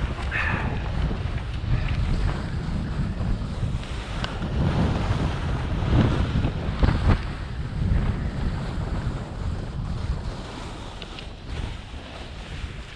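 Wind rushing over the camera microphone while skiing downhill, rising and falling with speed, mixed with the hiss and scrape of skis carving on packed snow.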